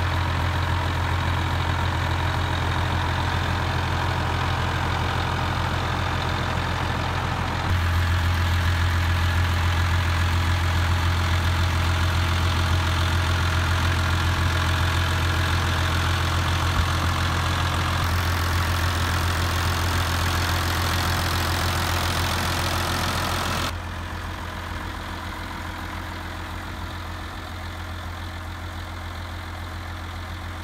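International Harvester farm tractor engine idling steadily, heard up close. It gets abruptly louder about eight seconds in and drops to a quieter, more distant sound near the end.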